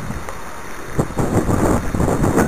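Wind buffeting the camera microphone: a low, rumbling rush that gusts harder about a second in.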